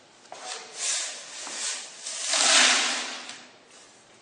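Water poured from a stainless steel pan into a plastic bucket to make brine, in two pours, the second louder and longer, tailing off near the end.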